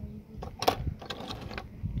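Small corroded metal pieces being handled by hand, clinking and knocking on wooden decking: a few sharp clicks, the loudest about two-thirds of a second in.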